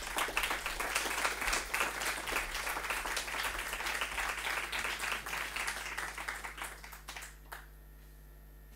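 Audience applauding: dense clapping that thins out and dies away near the end.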